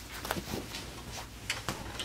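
A few light knocks and rustles, about five in two seconds: footsteps and handling noise as a banjo is lifted off a couch.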